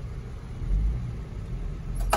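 Low rumble of a car idling at a drive-through window, growing louder about half a second in.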